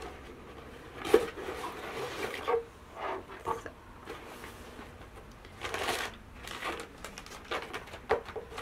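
Cardboard subscription box opened by hand, its lid lifted off and the contents handled, in several short bursts of cardboard and paper rustling and scraping.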